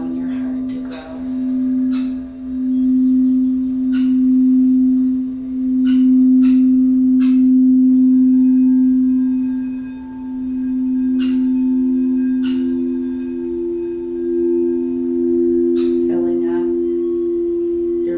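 Quartz crystal singing bowl played with a wand: one low, steady tone that swells and fades every second or two. A second, higher bowl tone joins about ten seconds in, and a few faint ticks are scattered through.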